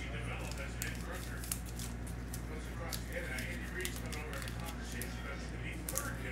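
Faint clicks and plastic rustling from hands handling trading cards and a clear plastic graded-card slab, over a steady low electrical hum.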